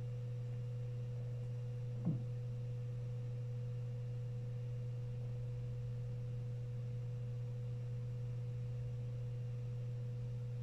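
A steady low hum with a faint higher tone above it, unchanging throughout. A short rising squeak about two seconds in.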